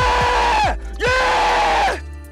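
A man's drawn-out celebratory yells, twice, each held just under a second and sliding down in pitch at the end, over background music with a kick-drum beat.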